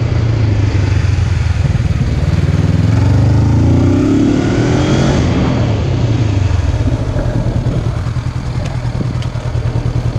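Honda CB500F's parallel-twin engine running as the bike is ridden slowly, the revs rising about two seconds in and again around five seconds, then easing off to a slow, pulsing low-rev beat near the end as the bike slows.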